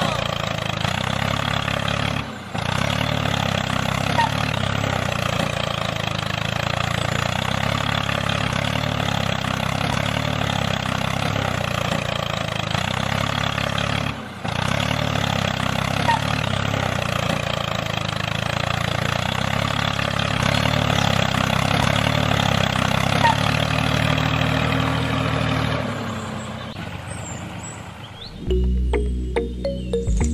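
A tractor's diesel engine running steadily at idle, with a low, even chug. It cuts out briefly twice and fades away near the end.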